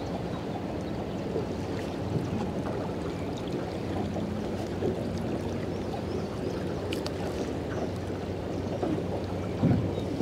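Water slapping and lapping against the hull of a small fishing boat, with wind buffeting the microphone and a faint, steady low hum underneath.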